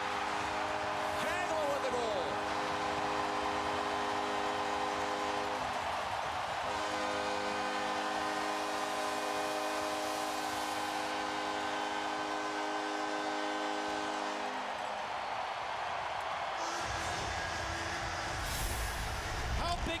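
Hockey arena goal horn sounding in two long blasts, the first about five seconds and the second about eight, over steady crowd noise: the arena's signal that the home team has just scored.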